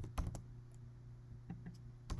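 Computer keyboard keys tapped a few times while numbers are typed in: a quick cluster of clicks near the start and a couple more about a second and a half in, over a faint low steady hum.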